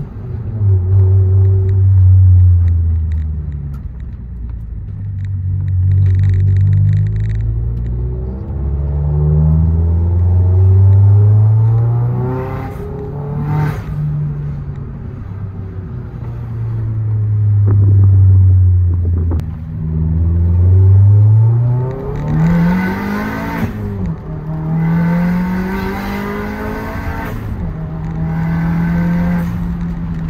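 Turbocharged 1.6-litre N18 four-cylinder of a MINI Cooper S Countryman fitted with a big turbo kit, heard from inside the cabin while driving: the engine note climbs under acceleration and drops back at each gear change, several times over.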